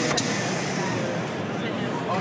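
A single sharp clack just after the start, from an Edlund commercial can crusher as the flattened steel food can drops out of it. Steady exhibition-hall noise with distant chatter runs underneath.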